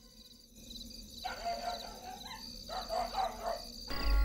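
Night ambience: a dog barking, with a steady, evenly repeated chirping of insects behind it. The barking starts about a second in and stops just before the music comes in.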